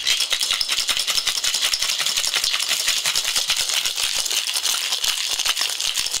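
Ice rattling rapidly and continuously inside a glass mason jar cocktail shaker as a drink is shaken hard.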